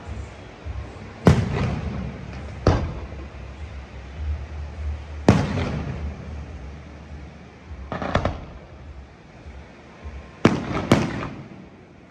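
Fireworks display: aerial shells bursting with sharp bangs, about six in the twelve seconds, each trailing off in a rolling rumble. Two come close together near the end.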